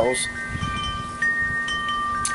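Wind chimes ringing, with several notes overlapping and sustaining, and new notes struck about a second in and again near the end.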